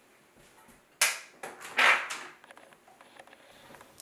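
A door being opened: a sharp click about a second in, then a second louder sound a moment later, followed by a few faint knocks.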